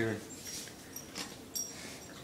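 Faint dog sounds, with a few short high-pitched squeaks.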